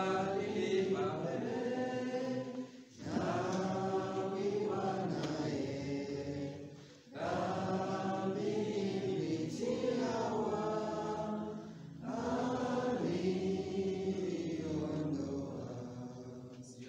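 Slow church hymn singing in four long, held phrases, each separated by a short break for breath.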